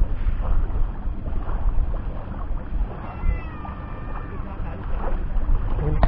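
A cat meowing: one drawn-out, wavering call about three seconds in, over a steady low rumble.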